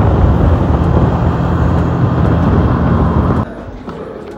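Motorcycle engine running with loud wind rushing over the microphone, heard from the pillion seat while riding. It cuts off abruptly near the end.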